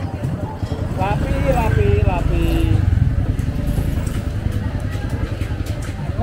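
Busy market crowd: people talking, with one voice calling out clearly about a second in, over the low rumble of a motorbike engine running close by, loudest in the first half.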